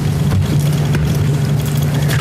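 Steady low hum with an even hiss beneath it: the background noise of the meeting room or its sound system.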